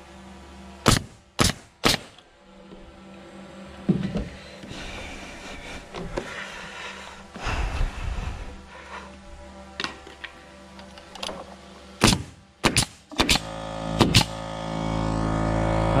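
Nails being driven into wooden barn roof strapping: three sharp strikes about a second in, then a quicker cluster of about six near the end, over background music. A hum rises near the end.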